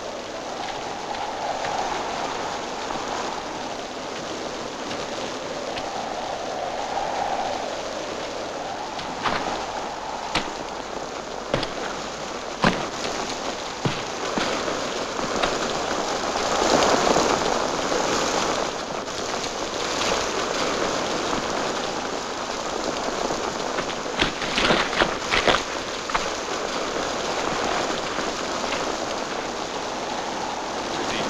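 Steady rain falling, with a few short sharp clicks scattered through it.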